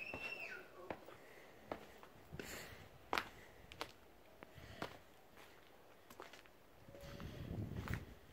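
Footsteps on concrete steps and a concrete path, a scattered series of light scuffs and taps. There is a short high chirp right at the start.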